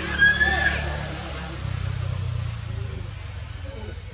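A macaque gives a short, shrill squeal with falling pitch just after the start, over a low drone that grows louder about one and a half seconds in.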